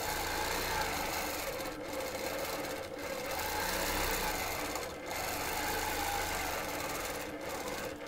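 Longarm quilting machine stitching, its motor and needle running steadily, with a few brief dips.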